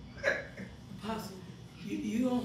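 Brief vocal sounds from people in the room: a short sharp exclamation about a quarter second in that drops in pitch, then another short voice-like sound around the one-second mark.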